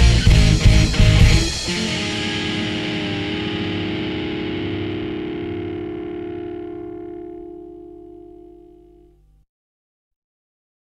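Ending of a rock song: the band hits the last beats with drums for about a second and a half, then a final distorted electric guitar chord is left ringing and slowly fades out, gone shortly before the end.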